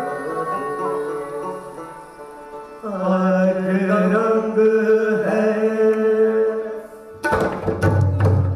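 Live Hindustani Sufi ensemble: voices and sarangi hold long sustained melodic notes, dipping and then rising into a new loud phrase about three seconds in. Sharp drum strokes from tabla and dholak come in about seven seconds in.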